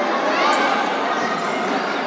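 Steady murmur of spectators' voices in an indoor sports hall, with no single loud event standing out.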